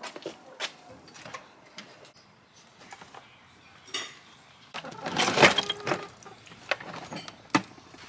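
Plastic storage boxes being lifted off a stack: light clicks and knocks of plastic lids and handles, then a louder stretch of scraping and rattling about five seconds in, followed by a couple of sharp knocks.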